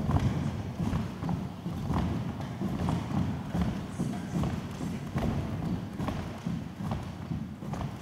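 Satin pointe shoes knocking and tapping on a wooden studio floor as a dancer moves on her toes, a quick, uneven patter of hard knocks from the stiffened shoe boxes.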